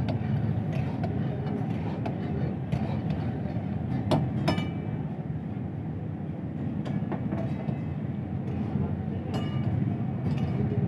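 Steady low rushing of gas wok burners, with several sharp clinks of steel utensils against the woks, the loudest two just after four seconds in.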